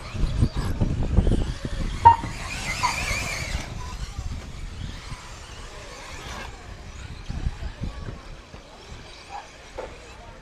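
Electric 1:10 4WD RC buggies running on a dirt track. Their motors whine and their tyres scrabble, swelling as a car passes close, loudest from about two and a half to four seconds in. A low rumble fills the first two seconds.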